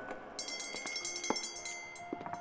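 Bell-like chime tones in a film score: a high, shimmering ringing begins about half a second in and holds, with a single lower struck note about midway.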